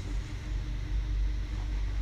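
A pause in speech filled by a steady low background rumble and hum with faint hiss.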